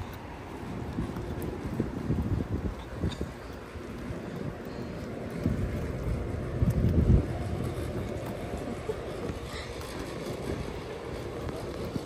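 Wind buffeting the phone's microphone, a low irregular rumble that comes in gusts and is strongest a little past halfway.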